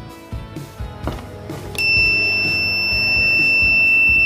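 Homemade door alarm going off: a small battery-powered buzzer starts a steady, high-pitched beep about two seconds in and holds it. The tone means the door has been opened, which pulled the insulating tab from between the clothespin's contacts and closed the circuit.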